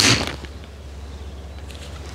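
A golf iron striking a ball off a hitting mat: a sharp crack right at the start, at the end of the swing's whoosh, dying away within half a second. A steady low hum follows.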